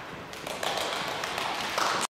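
Hand clapping from a small audience, starting about a third of a second in and growing louder.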